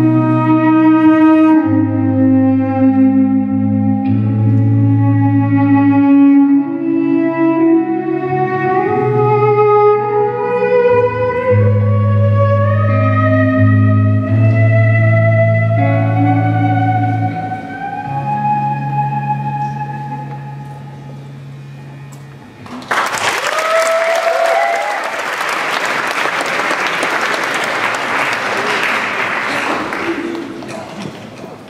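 Bowed cello playing long sustained notes, low notes held under a higher line that climbs step by step, slowly fading. About 23 s in a loud, dense wash of distorted electric guitars cuts in abruptly.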